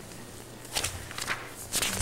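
A pause in a quiet meeting room filled with a few soft, irregular knocks and rustles of people moving, over a steady low hum and hiss.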